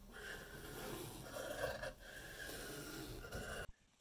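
Faint steady noise of room tone, with a brief dip about two seconds in, cutting off just before the end.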